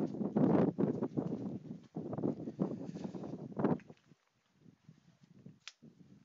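Irregular knocking and shuffling noises of someone moving about and handling things, busiest for the first four seconds and then fainter and sparser, with one short sharp sound near the end.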